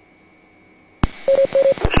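Police radio between transmissions: a second of faint hiss, then a sharp key-up click about a second in, followed by two short beeps and a couple of clicks as the next transmission opens.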